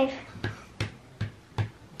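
Four light, evenly spaced taps, about 0.4 s apart, as a plastic Mouse Trap playing piece is hopped space by space across the game board to count out a roll of five.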